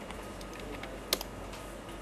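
Computer keyboard being typed on: a few faint key taps, then one sharp, louder keystroke about a second in, the Enter key that submits the MySQL root password at the login prompt.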